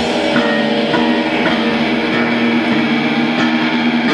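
Live heavy metal band playing loud: electric guitar with drums, a steady wall of band sound.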